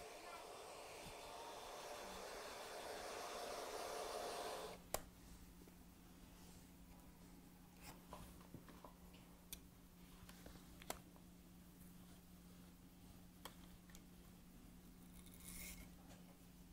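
Handheld hair dryer blowing steadily, switched off about five seconds in with a click. After that it is quiet, with a faint steady hum and scattered faint clicks and taps.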